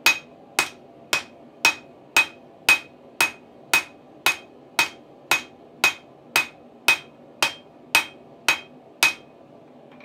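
Steady hand-hammer blows on a hot steel bar over a small Vevor Accio No. 30 anvil, about two a second, each with a short metallic ring. The blows stop about nine seconds in.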